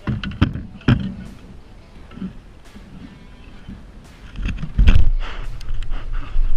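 A few sharp knocks in the small boat during the first second, then from about four seconds in a loud low rumble of handling or wind on the microphone while a hooked fish is fought close to the boat.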